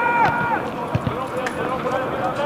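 Footballers shouting on the pitch during play: one held call at the start, then shorter voices, with a single dull thump about a second in.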